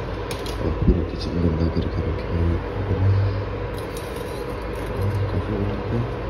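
Induction cooktop running under a saucepan of milk: its cooling fan whirring steadily with a faint high whine. A single knock sounds about a second in, as a pan or jar is handled on the counter.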